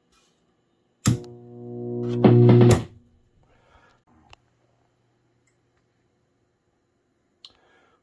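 Electric guitar played through a 1967 Fender Bandmaster (AB763) tube amp head that has just had new capacitors and a new treble pot fitted, making sound again: a chord about a second in that swells, a second louder chord, then cut off abruptly near three seconds in. A faint steady low hum from the amp remains afterward.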